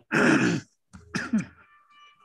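A person clearing their throat: a loud half-second burst, then a shorter one about a second later.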